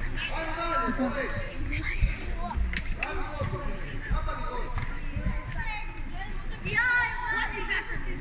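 Several voices talking and calling across a large hall, with a few sharp knocks about two and three seconds in.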